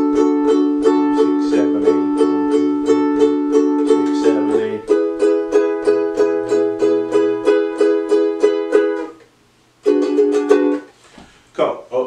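Ukulele strummed in a steady rhythm of about three strums a second, holding a D chord, then changing to an E chord a little under halfway through. The strumming stops about three-quarters of the way in, and one short strummed chord follows.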